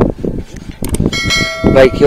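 A click, then about a second in a bright bell chime sound effect of a subscribe-button animation that rings on for most of a second.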